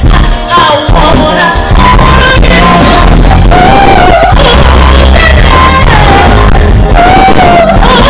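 Live band playing, with a woman singing lead into a microphone over bass guitar, drums and keyboards. Her voice holds long, wavering notes over a loud, steady bass line.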